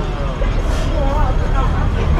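Steady low rumble of city street traffic, with faint voices of passers-by.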